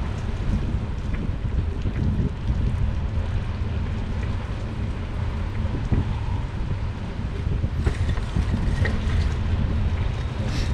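Wind buffeting the microphone of a handlebar-mounted camera on a moving bicycle: a steady low rumble, with a couple of brief knocks late on.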